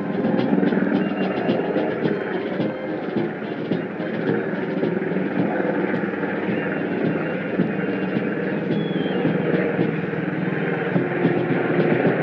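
Brass band music heard at a distance outdoors, held notes changing every second or two, under a steady wash of open-air noise.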